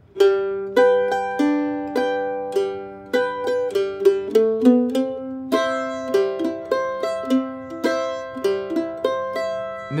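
F-style mandolin flatpicked in guitar-style boom-chuck backup: single bass notes alternating with chords through a G to C progression, with a short walk-up fill along the G string to the C chord.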